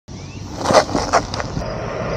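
Varla Eagle One electric scooter's knobby tyres rolling over rough asphalt, with three or four sharp knocks in the first second and a half, then a steadier rolling hum.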